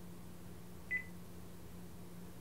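A single short electronic beep from a mobile phone as a call is hung up, over a low steady hum.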